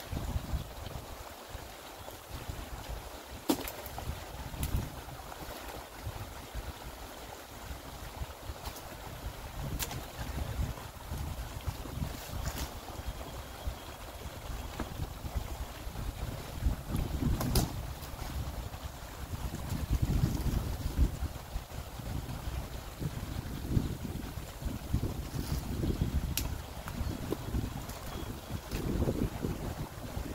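Water sloshing and splashing around a person wading and pulling sticks out of a beaver dam, with a low wind rumble on the microphone. The sloshing swells several times in the second half, and a few sharp snaps or knocks of wood stand out.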